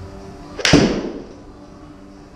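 A golf club striking a ball off an indoor hitting mat during a full swing: one sharp crack about two thirds of a second in, with a short tail as it dies away in the room.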